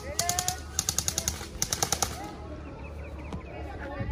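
Airsoft rifles firing in three rapid full-auto bursts of sharp clicking shots in the first two seconds, followed by a lull with faint voices.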